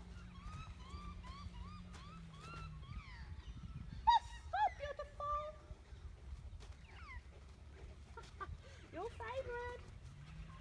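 Birds calling outdoors: a run of short honking calls that rise and fall in pitch, several a second at first, with louder calls about four to five seconds in and again near the end. A faint steady low hum sits underneath and fades out about three seconds in.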